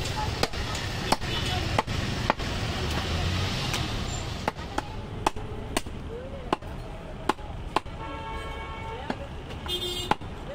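A butcher's cleaver chopping a goat leg, sharp strikes repeating irregularly at roughly two a second.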